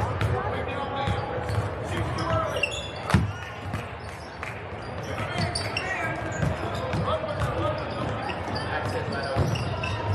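Basketball game sounds on a hardwood gym floor: a ball bouncing, short high sneaker squeaks and a steady chatter of voices from players and spectators. One sharp knock comes about three seconds in.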